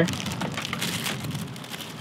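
Clear plastic packaging crinkling and rustling in the hand, fading over the two seconds.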